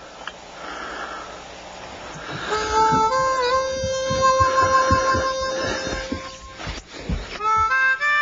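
Harmonica music: a slow tune of long held reedy notes comes in about two and a half seconds in. One note is bent down and back, and a new phrase starts near the end. Before the tune, only a quiet stretch of low noise.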